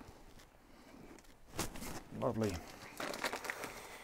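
A paper seed packet crinkling as it is handled and opened, with a run of small crackles in the second half. A man's voice gives a short murmur about two seconds in.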